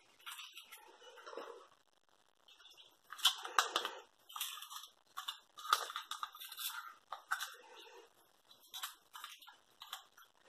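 Hands handling a plastic ribbon spool and pushing it into a cardboard storage box: irregular clicks, taps and rustles of plastic, ribbon and card, busier after about three seconds.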